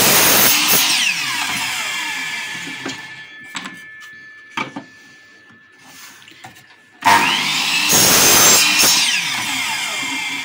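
DeWalt miter saw cutting wooden strips: the blade runs through a cut and winds down, falling in pitch, then after a quiet gap with two knocks the motor starts again about seven seconds in with a rising whine, makes a second loud cut and begins to wind down near the end.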